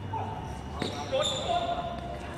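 Basketball game sounds: a single sharp bounce of the ball a little under a second in, with players shouting and calling out over the background of the court.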